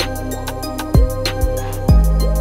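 Dark ambient trap instrumental beat: rapid, even hi-hats over a sustained synth pad, with deep 808 kicks that drop sharply in pitch about a second in and again near the end.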